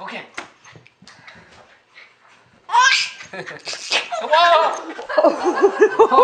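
A person's loud "whoa!" and bursts of laughter come after a couple of seconds of faint, scattered sounds. The laughter ends in a rhythmic run of laughs, about five a second.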